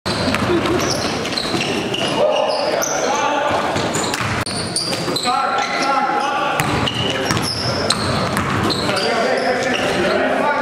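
Live sound of an indoor basketball game: a basketball bouncing on the gym floor, sneakers squeaking in short high chirps, and players' voices calling out.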